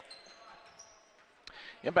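Quiet basketball-gym ambience: faint high sneaker squeaks on the hardwood court and a single sharp knock about one and a half seconds in, with a commentator's voice coming in at the end.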